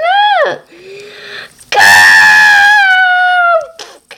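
A person screaming: a short cried 'no' at the start, then after a quieter moment one long, loud, high-pitched scream held for nearly two seconds, sliding slightly down before it stops.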